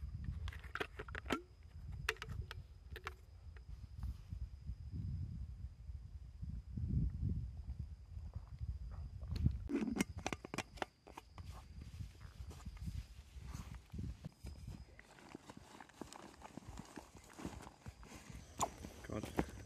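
Close handling noise from hiking gear: low rumbling and rustling from the camera being moved, broken by sharp clicks and knocks. Around ten seconds in, the clicks come from a plastic water bottle's screw cap being turned. A faint, steady high whine runs underneath until a few seconds before the end.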